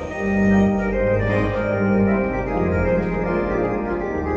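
Prestige 80 electronic organ played with both hands: sustained chords and a melody over a bass line that changes note about once a second.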